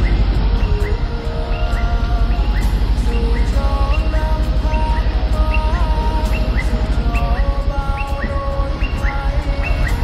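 Music: a melody of held notes, some with short upward slides, over a fast, steady low beat.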